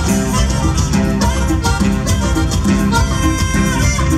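Huapango dance music from a band, an instrumental passage with a steady, driving beat and several held melody notes over it.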